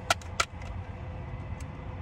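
Two sharp clicks close together near the start, then the low steady rumble of a vehicle idling, with a faint steady whine underneath.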